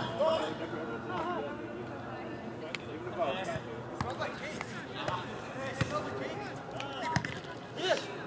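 Players' voices calling across the court, with a few sharp thuds of a soccer ball being kicked, the clearest about four seconds in and another near the end.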